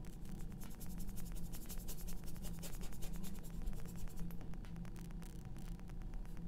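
Paintbrush bristles scratching and rubbing across canvas in rapid short strokes, working and wiping out wet oil paint, over a low steady hum.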